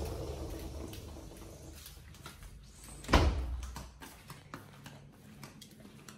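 A pit bull walking on a tile floor, its claws clicking lightly, with one loud thump about three seconds in.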